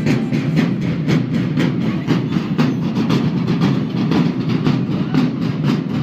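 Marching drum corps playing a steady, rapid beat on snare and bass drums.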